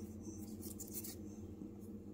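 Faint rubbing and rustling of fingers handling a strip of electrolytic capacitors still held in their paper tape, over a steady low hum.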